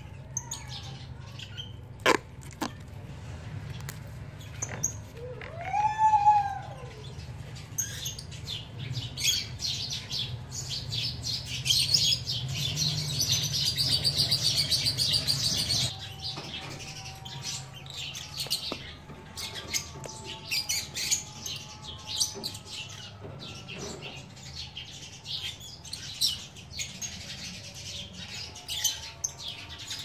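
Small birds chirping and calling, with scattered clicks and handling noise. One longer call rises and falls about six seconds in, and a fast rasping crackle runs for several seconds in the middle.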